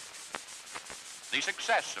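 Hiss and crackle of an old optical film soundtrack, with a sharp click, then a man's narrating voice begins about a second and a half in.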